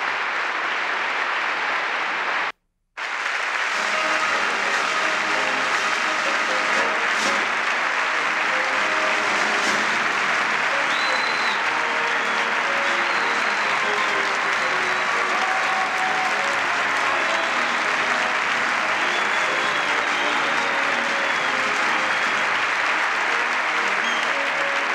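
Large audience applauding steadily at the end of a speech, with a military band playing faintly under the clapping from a few seconds in. The sound cuts out completely for about half a second near the start.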